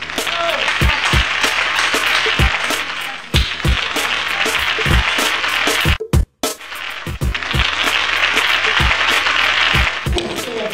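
Recorded hip-hop style backing beat: deep bass-drum hits over a low drone, under a loud hiss like static, with everything cutting out briefly about six seconds in.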